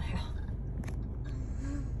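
Steady low rumble of a car heard from inside its cabin, with a brief faint hiss in the second half.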